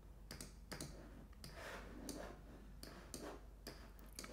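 Faint, irregular clicks of a computer mouse and keyboard as files are opened and windows arranged on a computer.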